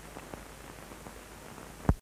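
Faint hiss of an old soundtrack with a few scattered crackles, then one loud low pop near the end.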